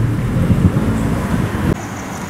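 Low rumble of road traffic, a motor vehicle passing close by. It cuts off suddenly near the end, giving way to a quieter background with a steady high-pitched tone.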